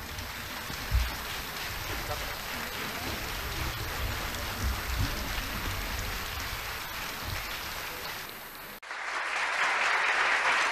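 Audience applause in a theatre hall, a steady patter of many hands clapping after the music has stopped. At about nine seconds it cuts abruptly to louder, closer clapping.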